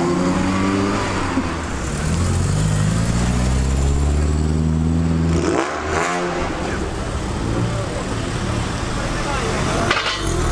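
Cars accelerating hard past the roadside, engines revving up. One engine note climbs steadily for several seconds, breaks off about halfway through as another car sweeps by, then climbs again.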